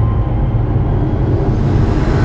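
A loud, steady low rumble with a noisy hiss over it, which set in suddenly just before and holds without clear tones.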